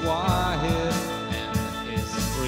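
Band music with guitars and drums: a melody line slides up and down in pitch over a steady beat.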